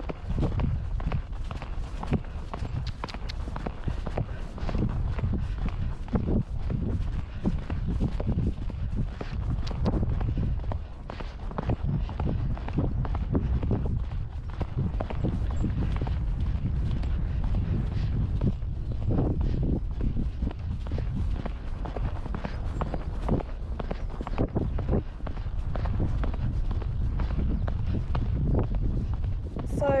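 A horse's hooves drumming steadily on a grass track at a canter, heard from the rider's camera, with a continuous low rumble underneath.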